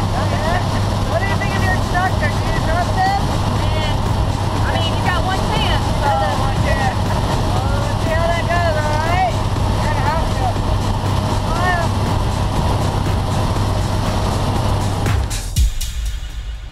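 Steady engine and propeller drone inside the cabin of a small skydiving jump plane in flight, with people talking loudly over it. The drone cuts off abruptly near the end.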